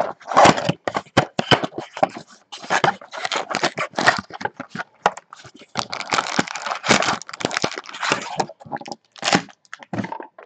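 Cardboard card box being torn open and its plastic-wrapped card packs pulled out: irregular crackling, tearing and rustling with sharp clicks.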